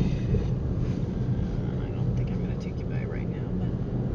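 Steady low rumble of a car's engine and tyres heard from inside the cabin while driving slowly along a street.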